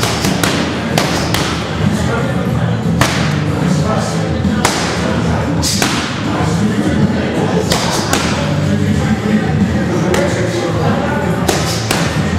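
Boxing gloves punching focus mitts: sharp smacks, often in quick pairs, with short pauses between combinations.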